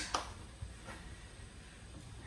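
Mushrooms cooking in butter in a stainless sauté pan, a faint steady sizzle, with two light clicks near the start and about a second in.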